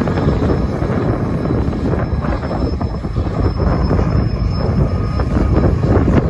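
Double-stack intermodal freight train running past, hauled by two GE ES44AC diesel locomotives: a steady rumble of engines and rolling wagons on the rails.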